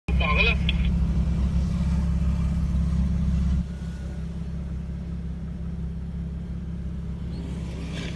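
Low, steady engine and drivetrain rumble of a Jeep heard from inside its cabin while it drives over sand. The rumble drops sharply in level about three and a half seconds in and stays lower after that.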